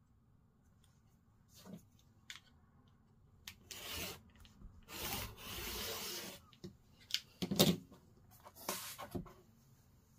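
Rotary cutter run along an acrylic quilting ruler, slicing through folded cotton fabric on a cutting mat: one long rasping stroke about halfway through. Shorter rubs and clicks of the ruler and fabric being handled come before and after it.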